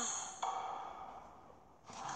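A girl's long, breathy sigh that fades out over about a second and a half.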